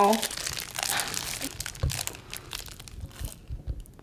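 A snack wrapper crinkling as a Rice Krispie treat is unwrapped by hand: a dense run of crackles that thins out after about three seconds.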